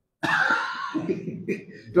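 A man coughs close to the microphone: a sudden harsh burst about a quarter second in, trailing off into a quieter rasp.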